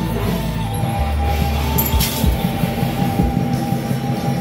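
Temple-procession music with drums and clashing metal percussion, over which a high note is held steadily from about a second in.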